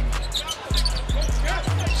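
A basketball dribbled on a hardwood court, over background music with a steady deep bass and a commentator's voice.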